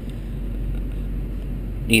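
Turbocharged GM truck engine idling steadily at about 700 rpm, a low even hum heard from inside the cab.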